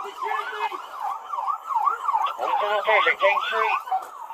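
Police car siren in a fast yelp, its pitch rising and falling about three times a second, cutting off near the end.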